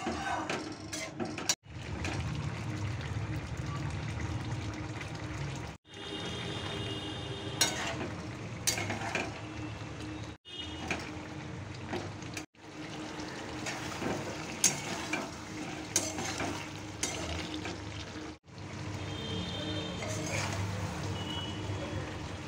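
Mixed-vegetable curry bubbling and sizzling in a steel kadai on a gas stove, with a metal spatula clicking and scraping against the pan now and then.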